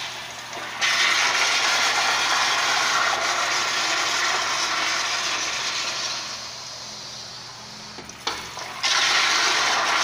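Eljer Signature commercial toilet flushing: a loud rush of water begins about a second in and eases off after about six seconds, then a fresh flush starts near the end. The bowl keeps failing to clear its load of toilet paper, so it has to be flushed over and over.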